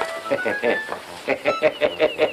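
A person's voice speaking in short phrases over background music.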